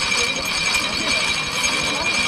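Gears of a hand-cranked rope-making machine running steadily, with a continuous high-pitched whine, as it twists strands of twine into rope.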